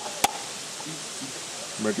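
A stone striking a coconut shell to crack it into smaller pieces: two sharp knocks right at the start, about a quarter second apart.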